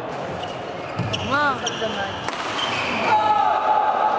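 A badminton doubles rally on an indoor court: sharp racket strikes on the shuttlecock and shoes squeaking on the court floor, with voices in the hall.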